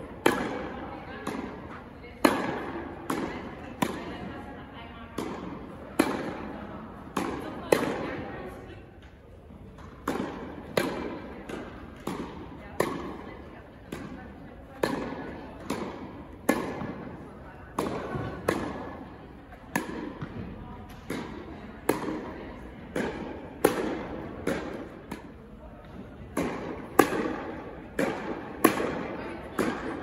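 Tennis balls struck by rackets and bouncing on an indoor hard court during a rally, a sharp pop about every half second to a second, each ringing briefly in the hall's echo.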